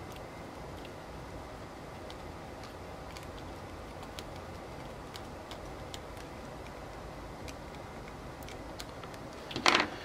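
Faint scattered ticks of a small screwdriver tightening the terminal screws of a DC barrel-jack screw-terminal adapter, over a steady background hiss. A brief louder burst of noise comes just before the end.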